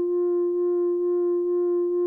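Music: a single electronic note held steadily at one pitch, the sustained last note of a short synthesizer jingle.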